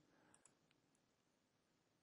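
Near silence: faint room tone, with a very faint mouse click or two about half a second in.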